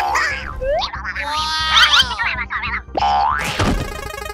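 Cartoon sound effects: springy boings and sweeping rising swoops, with a cluster of falling tones in the middle, over background music.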